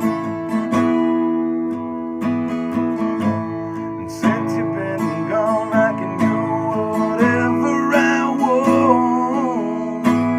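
Acoustic guitar strummed steadily, with a man's voice singing along from about halfway through.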